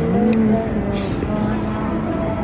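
A person's voice with long, drawn-out vowels, mostly indistinct, and a short hiss of an 's' about a second in.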